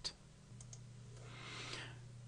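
A couple of faint clicks about half a second in, over a low steady electrical hum, then a soft hiss that swells briefly near the end.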